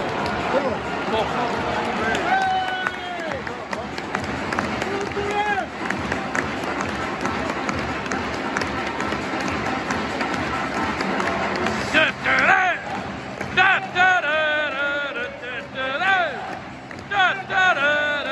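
Football stadium crowd noise as the teams walk out: a steady roar of cheering and clapping from the stands. From about twelve seconds in, clearer wavering voices rise above the crowd.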